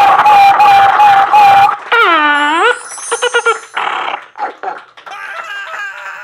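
A man making loud vocal noises into a microphone: a held tone for about two seconds, then a swooping dip and rise in pitch, then short choppy sounds.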